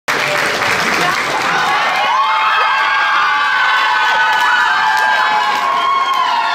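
Audience applauding and cheering, the clapping strongest in the first couple of seconds, then whoops and shouts from the crowd.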